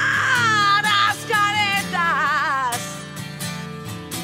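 A woman singing with a wide vibrato on held notes over her own steel-string acoustic guitar. Her voice stops about two-thirds of the way through, and the guitar plays on more quietly.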